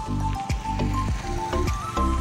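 Background music with a steady beat, bass and held synth-like notes.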